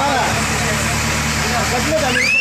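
An engine running steadily, a low, even hum under the shouting voices of a crowd.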